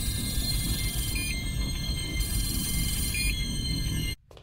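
Electronic sci-fi sound effect of a cyborg's targeting display: a low rumble under several steady high electronic tones, with a short beep about a second in and another two seconds later, and a tone that slowly falls in pitch. It cuts off suddenly at the end.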